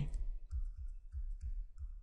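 Stylus on a drawing tablet during handwriting: light, irregular clicks and taps as the pen tip strikes and moves across the surface, with soft low thumps.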